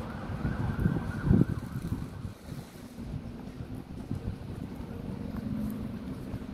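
Wind buffeting the microphone over a low rumble of street traffic and buses, with a faint high steady whine through the first couple of seconds and a low steady hum in the second half.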